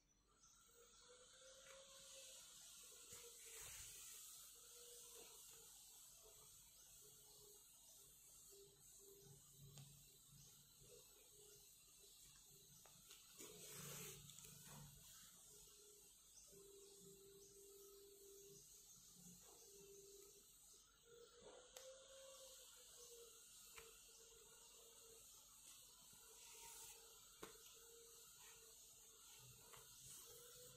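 Near silence: a faint steady hiss with a faint wavering tone, broken by a few soft rustles of the yarn and fabric being handled during hand-sewing.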